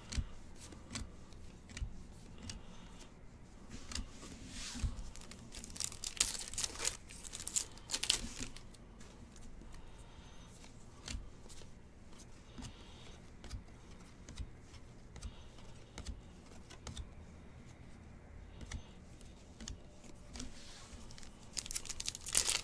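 Trading cards being flipped and slid through a person's hands one after another: faint, irregular rustles and light card-on-card clicks, with a few louder swishes a few seconds in. A foil card-pack wrapper starts to crinkle at the very end.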